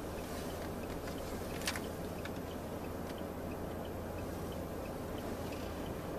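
Steady low hum inside a car's cabin, the engine idling, with one faint click a little under two seconds in.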